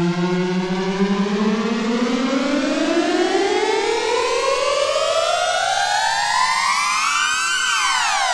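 A siren-like wail in a record's intro, rising slowly and steadily in pitch over about seven seconds. It levels off near the end and begins to fall.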